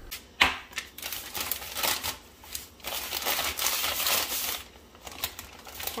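Plastic zip-top bag crinkling in bursts as chilled pie dough inside it is handled, with a sharp click about half a second in and smaller clicks near the end.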